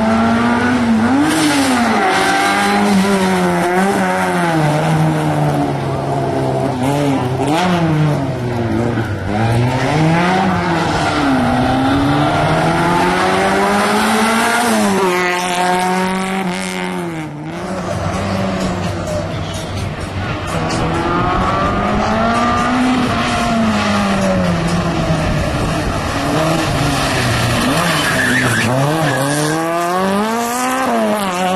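Autobianchi A112 rally car's four-cylinder engine driven hard through a tight slalom. The revs climb and fall repeatedly as it accelerates, lifts and brakes between the cones.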